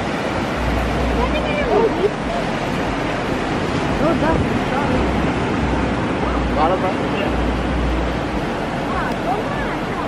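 Steady wash of ocean surf on a sandy beach, with gusts of wind rumbling on the microphone and a few brief voices.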